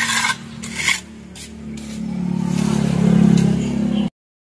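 A steel trowel scraping across wet cement in a wooden form, a few strokes about twice a second that fade out after the first two seconds. Under it a low engine-like hum grows louder in the second half.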